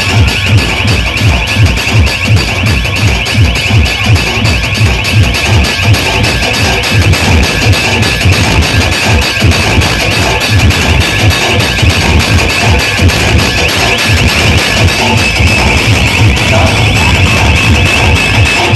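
Very loud DJ dance music blasting from a truck-mounted speaker-stack sound system, with a heavy, steady bass beat.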